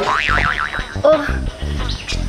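A cartoon-style comedy sound effect: a tone that sweeps up and then wobbles up and down for about half a second. Background music with a low beat plays under it.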